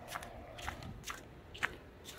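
A few faint, irregular clicks and crackles over low background noise, the sharpest one near the end.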